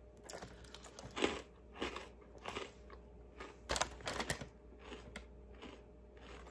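Freeze-dried banana chip being bitten and chewed: a string of short, irregular dry crunches.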